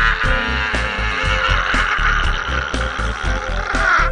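A man's long, held scream, sliding slowly down in pitch and cutting off near the end, over background music with a steady beat.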